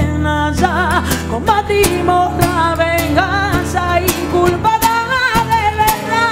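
A woman singing a wavering line with strong vibrato to her own strummed acoustic guitar.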